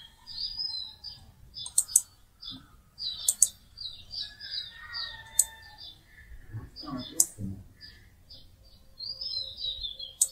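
Small birds chirping in the background, short high chirps repeating throughout, with several sharp computer mouse clicks at irregular intervals.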